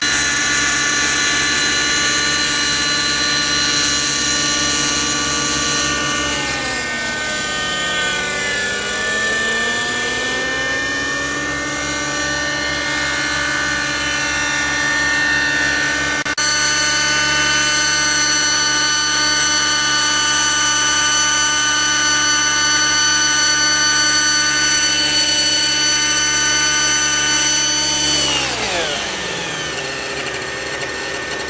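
Radio-control model helicopter's motor and rotors running with a steady, high-pitched whine. The pitch sags about seven seconds in and climbs back over the next few seconds. Near the end it falls away as the rotors spool down after landing.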